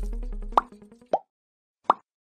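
The tail of background music, a low drone with faint ticking, fades out in the first half second. Then three short pop sound effects follow, well under a second apart, the first and last rising quickly in pitch.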